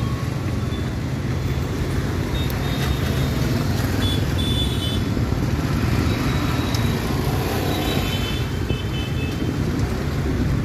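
Road traffic crossing: scooters and motorcycles running past and a car driving by, a steady low engine rumble. A few short high beeps come through now and then.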